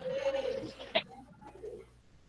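A dove cooing: one low, drawn-out coo followed by a sharp click about a second in.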